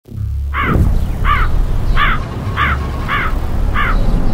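A crow cawing six times, about one and a half caws a second, over a low rumbling music bed.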